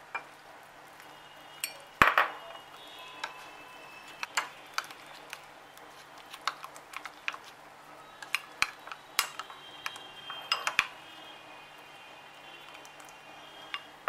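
A metal spoon stirring thick gram-flour (besan) batter in a glass bowl: irregular clinks and scrapes against the glass, some with a brief ring, the loudest about two seconds in.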